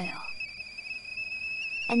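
Tea kettle whistling at the boil: one steady high whistle, wavering slightly, over a faint hiss.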